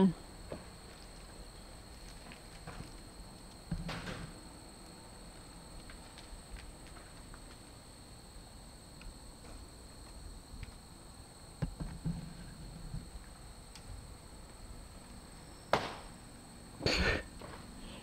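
Storm-damaged old wooden barn's timber frame straining: a quiet stretch broken by scattered sharp cracks and creaks, one about four seconds in, a couple around the middle and two louder ones near the end, as the weakened structure works toward collapse.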